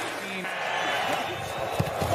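Steady stadium crowd noise under a televised football game, with a short sharp thump near the end.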